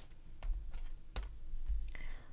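Tarot cards being dealt from the deck and laid on a table: a few light, sharp taps and snaps of card on card and card on tabletop.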